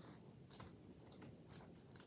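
Near silence with a few faint soft clicks: playing cards being handled.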